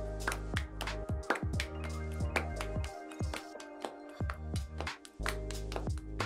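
Background music with a steady beat and a held bass line.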